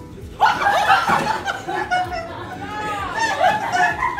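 Several young people's voices talking and laughing over one another, starting about half a second in.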